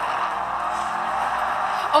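Film soundtrack of a vehicle chase: a steady rushing noise of vehicles driving fast, with music underneath.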